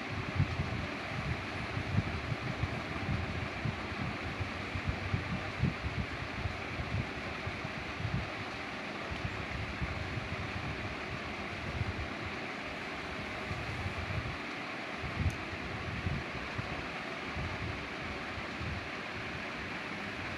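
Steady hiss with irregular low rumbling, like air buffeting the microphone.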